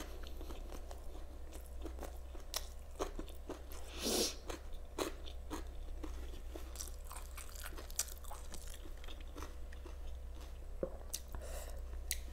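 Close-up chewing of a homemade egg burger with raw cabbage, with irregular wet clicks and crunches from the mouth and a louder crunch about four seconds in. A steady low hum sits underneath.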